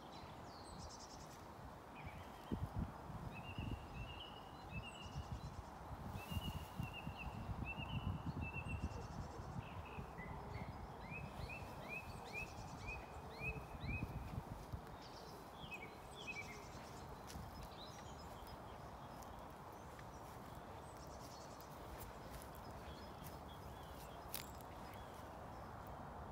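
Small birds chirping in quick runs of short high notes through the first two-thirds, over a steady outdoor hiss. Irregular low thumps and rumbles come in the first half.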